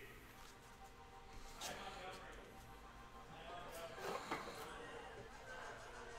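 Faint background music, with a few light clicks of trading cards being set down on stacks: once about two seconds in and again around four seconds.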